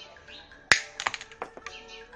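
Wire cutters snipping through bonsai training wire coiled on a sapling's stem: one sharp snap a little after half a second in, then a few lighter clicks as the tool and wire shift.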